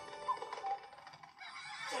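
A few short, squawking bird cries from an animated film's soundtrack, heard through a television's speakers, fading within the first second.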